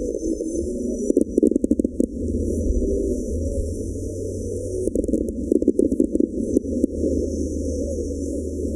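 Aerial firework shells bursting and crackling in two quick clusters, about a second in and again from about five to six and a half seconds, over loud background music. The middle of the sound range has been filtered away, leaving only the bass and the high crackle, so it sounds hollow.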